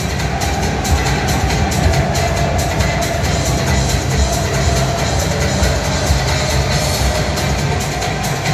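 Football supporters' section singing a chant in unison over a steady drumbeat, loud and continuous.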